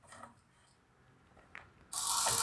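Quiet handling with a couple of faint clicks as a servo lead is plugged into a servo tester. Just before the end, a micro servo's gearbox starts up with a loud, grinding whir.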